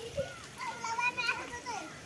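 Young children's voices, high-pitched chatter and calls of children playing.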